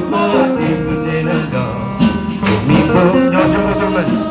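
Choir singing in harmony with instrumental backing, over a steady beat of percussive strikes and hand claps.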